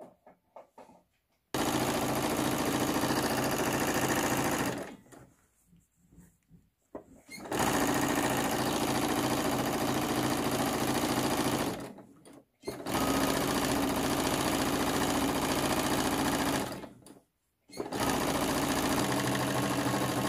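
Singer Quantum computerized sewing machine stitching a side seam. It runs in four steady stretches of about three to four seconds each, stopping briefly between them.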